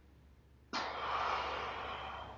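A sudden, forceful hiss of breath from a person's mouth, starting sharply and lasting about a second and a half before tailing off.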